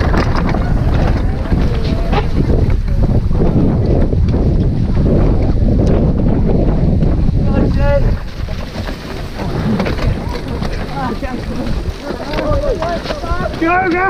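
Wind buffeting a helmet-camera microphone on a mountain bike racing downhill, with a steady rumble of tyres and bike over rough grass. The rumble drops sharply about eight seconds in as the bike slows in a jammed pack, and riders' shouts and whoops are heard, most near the end.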